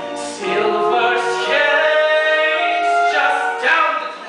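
Singing with musical accompaniment from a live stage musical, voices holding long, sustained notes. It ends abruptly near the end.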